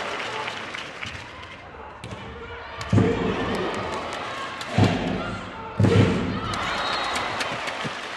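Indoor volleyball arena: voices and crowd noise echoing through a large hall, with three heavy thumps about three, five and six seconds in.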